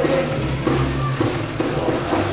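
A drum and bugle band playing, the bugles holding steady notes over the drums.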